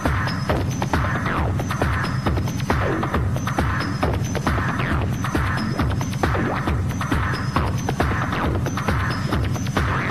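Techno with a steady, driving kick drum and a throbbing bass line. Noisy percussion repeats in an even loop above it.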